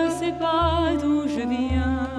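Music: a woman singing a long held melody with vibrato, over a low pulse that returns about once a second.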